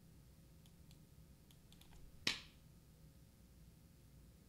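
A few faint clicks at a computer, then one sharper, louder click a little past halfway, over a faint steady hum.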